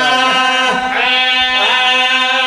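A man's voice chanting a mourning lament in a drawn-out, wavering melody through a loudspeaker system, over a steady held drone; the voice pauses briefly about half a second in, then rises again.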